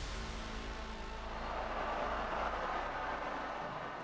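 Steady roar of a football stadium crowd over a low music bed.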